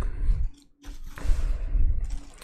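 Plastic film wrapping crinkling and rustling as it is handled, with a short silent gap about half a second in.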